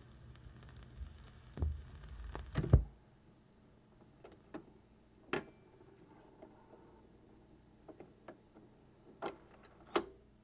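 Vinyl 45 turntable at the end of side: groove and surface noise with a couple of thumps, which cuts off suddenly just under three seconds in as the stylus leaves the record. Then sparse, faint clicks and ticks from the turntable mechanism as the arm moves away.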